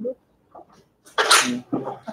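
A person sneezes once, a sudden loud burst about a second in.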